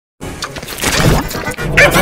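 Loud, heavily distorted 'G Major' effects-edit audio: a dense, harsh mix of pitch-shifted layered sounds that starts a moment in.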